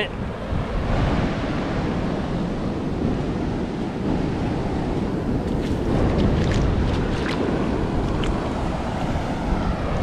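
Ocean surf washing up the beach with wind buffeting the microphone, a steady rushing noise. Partway through, a few faint splashes as a shoe steps through the shallow wash.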